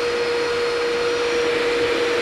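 A small electric machine running steadily: one even whine over a loud rushing hiss, with no change in speed.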